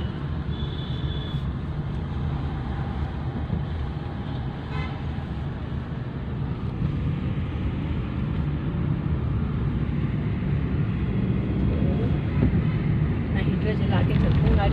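Car cabin road noise as the car pulls away and drives on: a steady low rumble of engine and tyres that grows gradually louder as it gathers speed. A brief high horn toot sounds about a second in.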